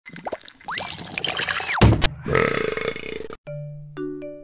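Cartoon intro sound effects: two whistle-like pitch glides, a loud thump just before the two-second mark, and a buzzing sound. Then a short jingle of chiming notes over a low held note begins near the end.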